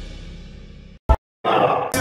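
Intro theme music fading out over about a second, then a single short blip, a moment of dead silence, and a cut to room sound with a brief voice sound just before speech starts.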